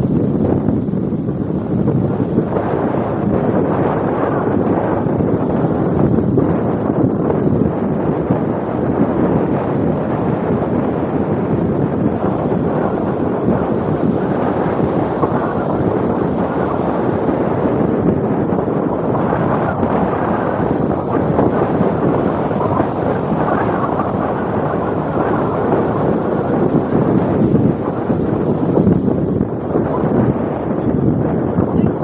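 Wind buffeting the microphone over the steady wash of breaking surf.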